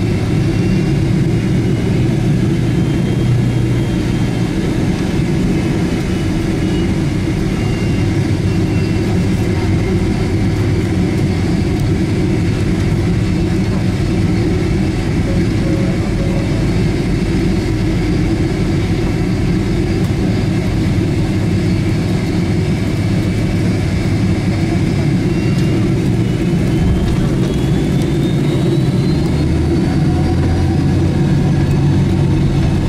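Boeing 767 jet engines running, heard from inside the cabin as a steady, loud roar with a faint whine. Over the last few seconds the whine climbs in pitch.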